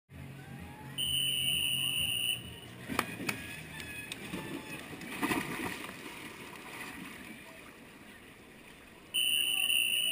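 Two long, steady, high referee whistle tones about eight seconds apart, the signals calling backstrokers into the water and then back to the wall to hold the start handles. Between them comes splashing as a swimmer drops into the pool, with a couple of sharp clicks.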